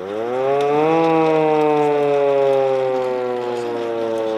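Hand-cranked WWII-era air-raid siren wailing, the kind used to sound the air-raid alarm in the 1940s. Its pitch climbs steeply in the first second as it is cranked up to speed, then slowly falls.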